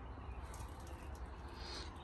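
Faint outdoor background noise: a low steady rumble under a soft even hiss, with no distinct sound standing out.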